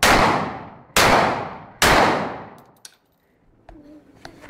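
A handgun fired straight up into the air: three shots roughly a second apart, each with a long echoing tail that dies away before the next.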